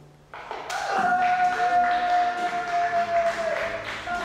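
A song fades out, and about a third of a second later a new passage of music starts with one long held note that lasts about three seconds and ends near the close, with light taps and thumps underneath.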